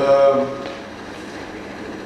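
A man's short drawn-out hesitation sound, 'uh', in the first half-second. It is followed by a pause with only steady room tone.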